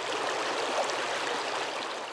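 Shallow, fast-flowing creek rushing over rocks in a riffle: a steady, even rush of water.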